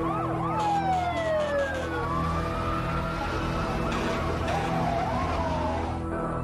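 Emergency vehicle sirens wailing, several overlapping sirens rising and falling in pitch.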